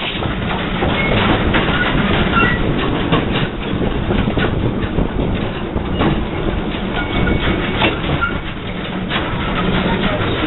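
Narrow-gauge (600 mm) train hauled by a small Borsig steam locomotive, running steadily with a continuous rumble and irregular clicks from the wheels over the rails. A few brief high-pitched squeaks come and go.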